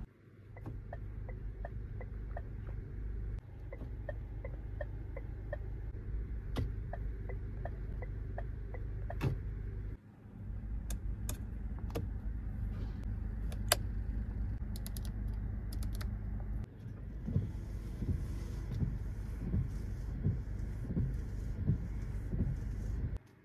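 Inside a car cabin with a steady low hum: a turn-signal relay ticking evenly about twice a second, sharp clicks of the column stalks being switched, and in the last few seconds the windscreen wipers sweeping.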